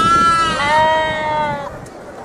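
Sheep bleating: one long, high call that drops to a lower pitch about halfway through and ends after a second and a half or so.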